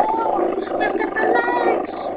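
A person singing loudly along to a song, with held and bending notes, picked up close on a low-quality webcam microphone that cuts off the highs.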